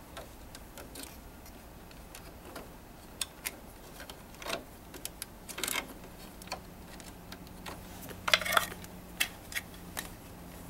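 Plastic wire connectors and cables being handled and pushed into a plastic connector junction box: scattered light clicks and rattles, with a louder cluster of clicks near the end.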